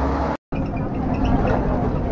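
Low traffic rumble cut off abruptly by an edit about half a second in, then the inside of a city bus: steady engine and road noise in the passenger cabin with a faint steady hum.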